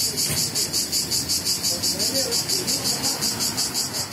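A cicada singing in the tree canopy: a loud, high-pitched buzzing chirr, pulsed at an even rate of about eight pulses a second without a break. A faint low rumble lies underneath.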